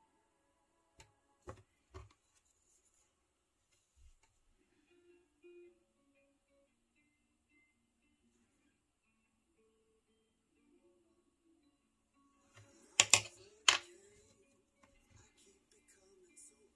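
Faint background music with scattered light clicks of a paintbrush and plastic paint bottles being handled, and a couple of sharp, loud clicks about 13 seconds in.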